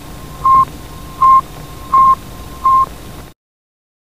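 Recording of Sputnik 1's radio beacon as heard on a shortwave receiver just above 20 MHz: a steady series of short, high beeps, about one every three-quarters of a second, over a hiss of static. It cuts off suddenly a little past three seconds in.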